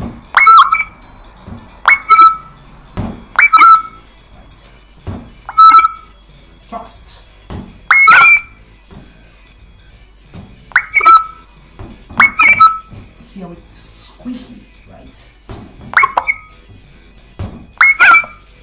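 Synthesized sonification tones from a sword-strike sensor system: a short, squeaky two-tone beep with a quick pitch bend sounds after each detected dagger strike, about nine times at uneven intervals. Each tone is generated from the strike's waveform, so its shape marks the kind of strike, with the pitch rising for a true edge cut and falling for a false edge cut.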